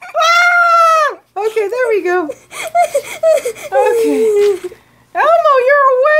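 High-pitched wordless vocal sounds from a person: one long held, wavering note in the first second, then a string of shorter rising and falling squeals and whines.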